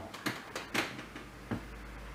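A few faint sharp creaks and clicks in a quiet room, with a low hum coming in about halfway.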